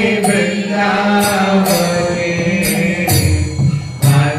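Devotional kirtan: a voice singing a chant over a steady low drone, with metal hand cymbals (kartals) struck about twice a second.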